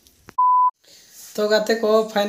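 A single short electronic beep at one steady high pitch, about a third of a second long, cut cleanly in and out of dead silence like an edit-inserted bleep.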